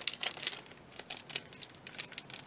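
Thin clear plastic packaging crinkling as paper tags are handled and slipped back into it, in quick irregular crackles that are busiest in the first second and then thin out.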